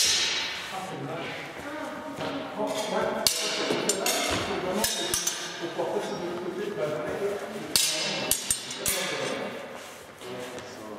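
Steel training longswords clashing in a large, echoing hall, each blade strike ringing briefly: a sharp clash at the start, another about three seconds in, and a quick run of four near the end.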